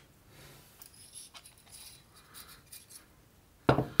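Faint rustling and light scraping as the air rifle's removed coil mainspring, spring guide and other metal parts are handled and set down on a paper towel, with a louder knock near the end.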